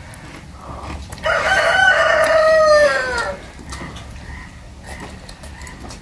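A rooster crowing once, a single call of about two seconds that drops in pitch as it ends.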